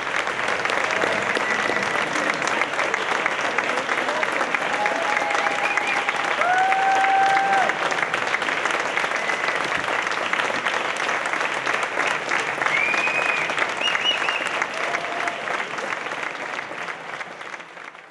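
An audience applauding warmly at the end of a performance, with a few brief shouts rising above the clapping. The applause fades away near the end.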